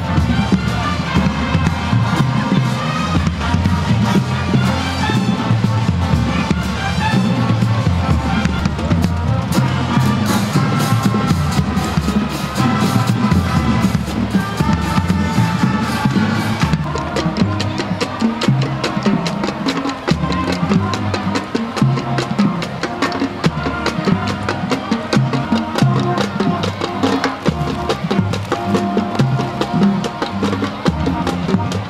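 High school marching band playing: brass horns and sousaphones over a marching drumline with bass drums. About halfway the sound changes abruptly to another band, with a sharper, more regular drum beat under the horns.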